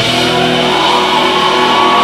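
Live indie rock band with electric guitars and bass holding a sustained, ringing chord. The drum beat has dropped out.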